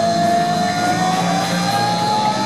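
Live rock band playing, with one long held note that slowly rises in pitch over the drums and bass.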